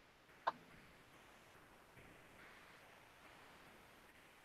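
Near silence: faint room tone, with one brief click about half a second in.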